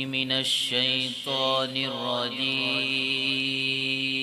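Solo Quran recitation (tilawat) by a qari: a man's voice chanting in a melodic, ornamented style, gliding through a phrase and then holding one long steady note from about halfway through.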